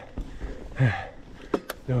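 A mountain biker breathing hard while riding a hardtail down a trail, with one falling, voiced exhale about a second in. Low tyre and trail rumble runs underneath, and two sharp clicks from the bike come about a second and a half in.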